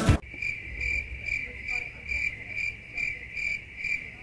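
Crickets chirping: a steady high trill pulsing about two or three times a second. It starts and stops abruptly, as an edited-in sound effect, the comic 'awkward silence' gag.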